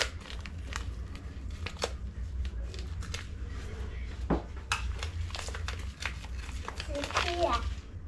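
Plastic packet crinkling and scattered sharp clicks at irregular intervals as ingredients are handled over the mixing basin, over a steady low hum. A short bit of voice comes near the end.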